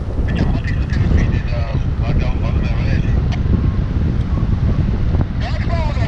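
Wind noise from the airflow of a paraglider in flight, rushing and buffeting steadily over the microphone, with snatches of voices heard through it.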